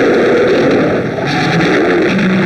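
Loud, dense fight-scene soundtrack with a harsh, distorted, guitar-like tone that wavers in pitch throughout.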